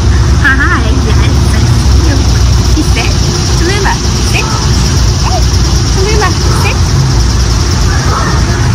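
Outdoor background noise: a steady low rumble with an even high-pitched drone over it, and a few short chirping glides scattered through.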